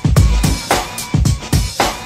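Instrumental b-boy breakbeat music: a looping funk-style drum break of kick and snare hits, with no vocals.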